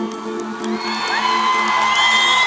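Live concert music ending on a long held chord that fades while the crowd cheers. About a second in, a voice glides up into a long, high held note.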